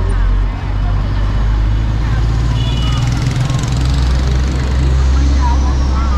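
Busy street traffic heard while riding along among scooters and cars: a steady low drone under the general traffic noise, with voices in the background. A short high beep sounds a little before halfway.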